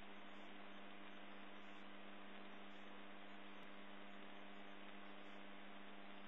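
Homebuilt CoreXY 3D printer running mid-print, heard as a faint, steady hum that does not change.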